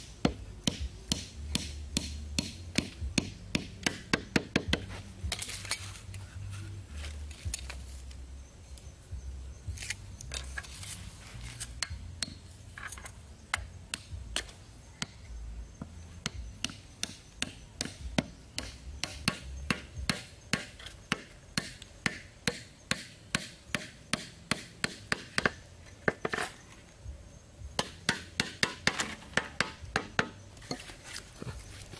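Hatchet head hammering wooden stakes into sandy ground: a long series of sharp knocks, often two or three a second, pausing briefly twice.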